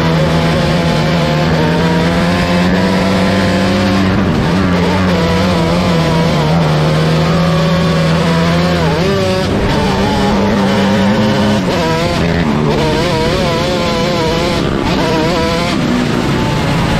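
Engine of a 125cc micro sprint car racing flat out on a dirt track, heard from the cockpit. Its pitch holds steady and climbs slowly for the first half with a short dip about four seconds in, then wavers up and down through the second half.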